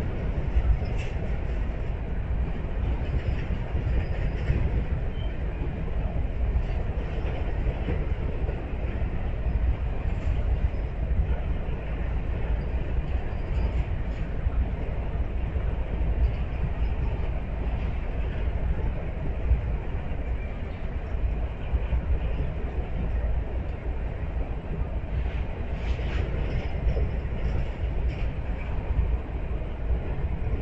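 A double-stack intermodal freight train rolling past: a steady low rumble of steel wheels on rail, with faint scattered clicks.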